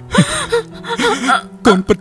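A person sobbing, with gasping breaths and a few choked, tearful words.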